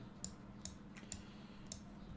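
Faint computer mouse clicks, about four over two seconds, over a low steady hum, as chess pieces are moved on an on-screen board.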